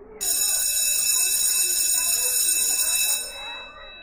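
A school bell ringing loudly for about three seconds, then fading out, over a room of voices chattering.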